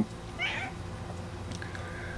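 A short, faint animal call about half a second in, followed by a fainter thin held tone near the end.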